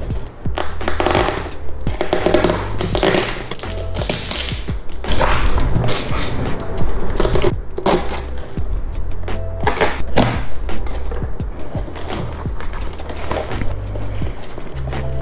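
Packing tape being peeled and ripped off a cardboard box, and the box being torn open, in a run of loud, noisy tearing bursts. Background music with a steady low beat plays under it.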